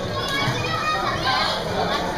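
Young children's voices and chatter in an indoor swimming pool, with no clear words.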